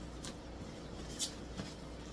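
Cardboard box flaps being pulled open: a couple of short scrapes and rustles of cardboard, the sharpest about a second in.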